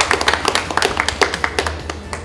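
A small group applauding with hand claps that thin out near the end.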